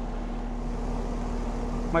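Residential central air conditioner's outdoor condensing unit running: a steady hum from the compressor and condenser fan, with one constant tone under it.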